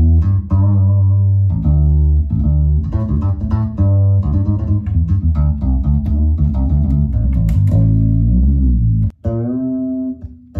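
Ernie Ball Music Man StingRay fretless bass with flatwound strings, played as a continuous line of sustained low notes, with a brief break about nine seconds in before a few more notes.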